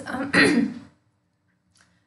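A woman coughs once to clear her throat, a short voiced burst about half a second in.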